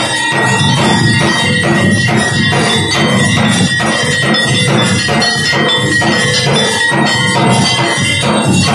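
Hanging brass temple bell rung continuously by hand, its ringing tones held steady, together with an even beat of metal percussion at about three to four strokes a second.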